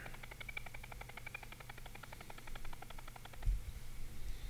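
Video-editing playback stepping through footage a frame at a time, sounding the clip's own recorded audio in tiny slivers. It makes a rapid, even stutter of about ten blips a second, which the editor calls a motorboat effect. The stutter stops about three and a half seconds in, and a brief low thump follows.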